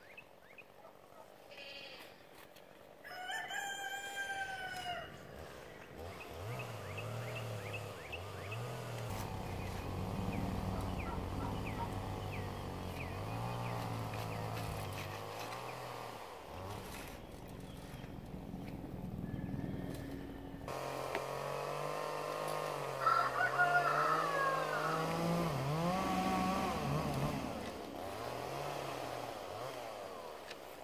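A rooster crowing, one clear crow about three seconds in, rising and then falling. Other drawn-out, wavering pitched sounds follow through the rest of the stretch.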